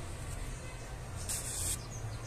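A needle and thread being drawn through grosgrain ribbon as a bow is hand-sewn: one short, soft hiss of the thread passing through the ribbon a little over a second in, over a steady low hum.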